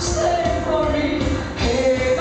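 Live rock band playing, with a woman singing long held notes over bass guitar and drums.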